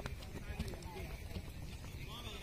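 Wind rumbling on the microphone over an open field, with faint distant voices of people calling out.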